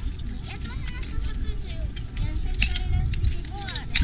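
Heaped empty oyster shells clinking and scraping against each other as a child rummages through them by hand, with sharper clacks about two and a half seconds in and just before the end.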